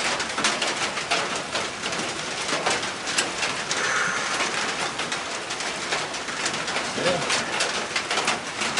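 Metal sockets and hand tools clinking and rattling in quick irregular clicks as someone rummages through a socket set to find the right size.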